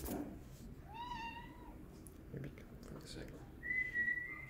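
A cat meowing once, a short call that rises and then levels off, about a second in. Near the end a thin, steady high tone starts.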